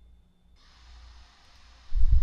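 A faint breath let out into the microphone, a soft airy rush lasting about a second and a half over a low steady hum, followed by a low thump right at the end.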